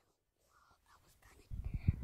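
Near silence, then about one and a half seconds in a boy's soft, whispery voice and breath start up, with a few faint mouth clicks.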